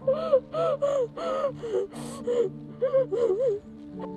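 A young girl sobbing in a run of short, high-pitched cries, with a sharp gasping breath about halfway through.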